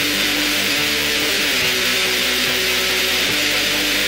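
Raw, lo-fi black metal: heavily distorted electric guitar over a dense, hissing wash, with its notes changing every half second or so.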